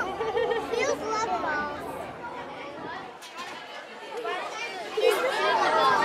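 Indistinct chatter of children and adults, growing louder and busier about five seconds in.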